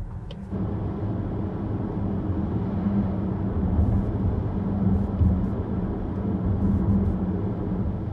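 Car driving at a steady speed, heard from inside the cabin: a steady low engine drone with tyre and road noise, starting about half a second in.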